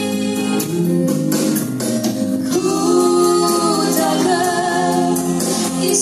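Two women singing a gospel duet into microphones, amplified through a PA, with long held notes.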